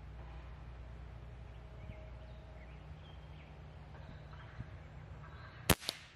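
Quiet outdoor background with faint bird chirps, then near the end a single sharp shot from a .22 Reximex Throne Gen2 PCP air rifle (a sub-500 fps Canadian-spec model). A fainter click follows a split second after the shot.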